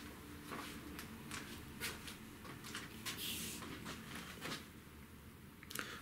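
Faint handling noise, a few soft scattered clicks and rustles, as a telescopic match rod is loaded by pulling on its line.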